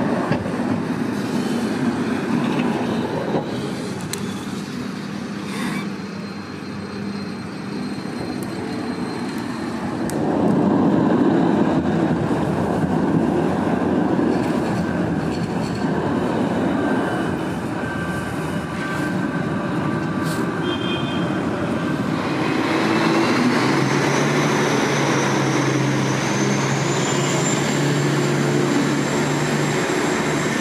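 Trams running on rails, with the noise swelling about ten seconds in. Near the end an electric whine rises in pitch over a steady lower hum.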